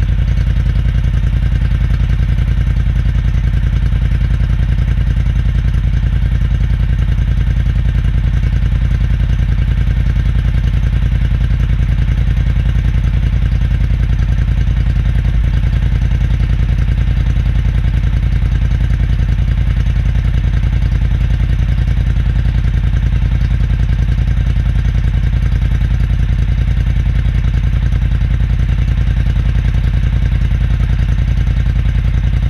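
Polaris Scrambler 1000 ATV engine running steadily, its note holding the same throughout.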